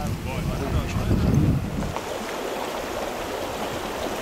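Wind rumbling on the microphone with faint voices over it. About halfway through it gives way abruptly to a steadier, thinner hiss.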